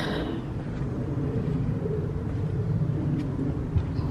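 A steady low rumble of outdoor background noise, with a few faint ticks in the second half.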